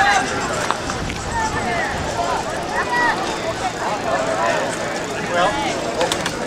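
Indistinct voices of several people talking in the open air, over a steady background of outdoor noise.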